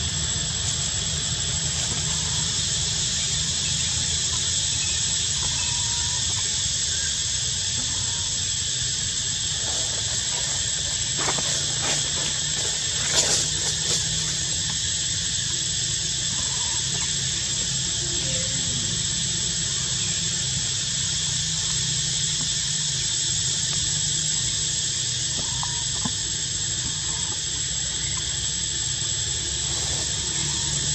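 Steady, high-pitched insect chorus in forest over a low, constant rumble, with a few brief clicks or rustles in the middle, the loudest about 13 seconds in.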